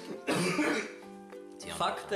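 Background music with steady held notes, under a short, loud burst of a man's laughter about a quarter of a second in. A man starts speaking near the end.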